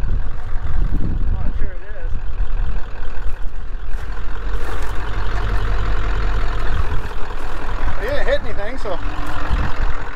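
A vehicle engine idling steadily, a low even rumble.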